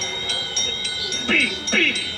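Eerie film score of tinkling, chime-like bell tones struck over sustained ringing notes, with a few short vocal sounds past the middle.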